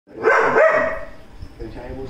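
A Doberman barks once, a loud, drawn-out bark lasting about a second.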